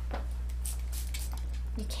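A few short hisses of a pump spray bottle of MAC Fix+ misting a makeup brush, faint against a steady low hum.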